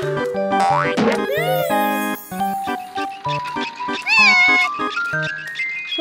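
Cartoon background music with comic sound effects: a quick rising glide about a second in, and short wordless character vocal sounds about one and a half and four seconds in.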